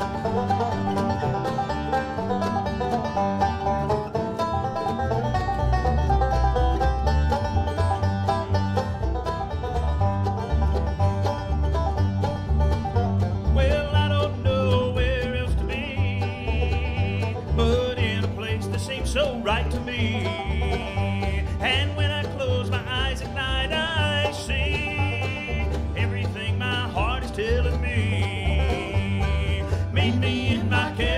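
Live bluegrass band playing on five-string banjo, upright bass, acoustic guitar and mandolin, with a steady bass beat. Singing comes in a little before halfway through.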